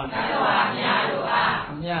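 A group of voices reciting together in unison, in two phrases, answering a single leading voice that begins the next phrase near the end.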